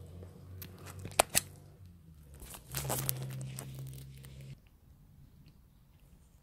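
Handling noise as the overhead camera is taken down and moved: two sharp clicks in quick succession just over a second in, then a rustle. Under it is a low steady hum that stops about three quarters of the way through.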